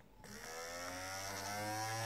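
Braun Silk-épil 7 epilator's small DC motor starting about a quarter of a second in and running, its tone rising slowly in pitch as it spins up. The motor runs again after the battery-management IC was reset.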